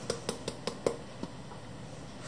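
A few light ticks and taps in the first second as a freshly rinsed K&N panel air filter is handled in wet hands over a ceramic sink, then near quiet.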